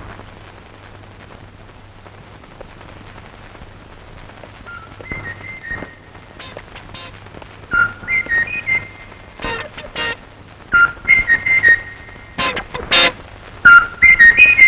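Old film soundtrack: a faint low hum at first, then from about five seconds in a high whistled tune of short held notes, broken by sharp knocks that get louder near the end.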